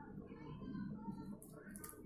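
Faint talking voices, with a few short clicks about three quarters of the way through; no power tool is running.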